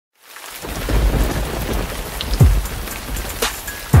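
Rain-and-thunder sound effect for a logo intro. A steady hiss of rain starts about a quarter second in, with two deep booms that fall in pitch, one about halfway through and a louder one near the end.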